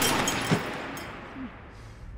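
Ringing tail of a pistol shot fired in a small store, fading away over about a second and a half, with a small thump about half a second in.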